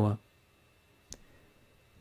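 A single computer mouse click about a second in, selecting a map location; otherwise near silence.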